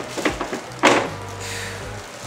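Stainless-steel cooktop being set down into its cutout in a wooden butcher-block counter: a few light knocks, then one sharp clunk a little under a second in as it drops into place.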